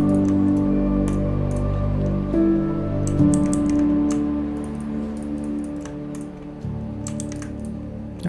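Soft background music of held chords that change every few seconds, with scattered light clicks from a computer mouse and keyboard.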